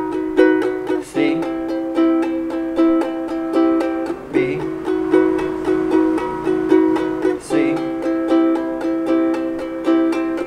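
Ukulele strummed in a steady rhythm of quick down-and-up strokes, moving through a chord progression with a brief break in the strum at each chord change, about every three seconds.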